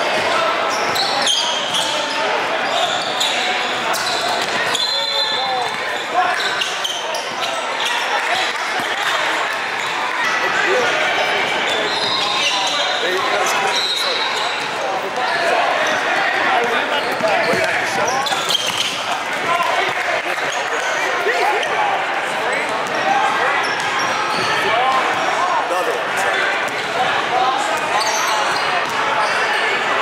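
Basketball being dribbled on a hardwood gym floor, amid the steady hubbub of many overlapping voices from players and spectators echoing in a large hall.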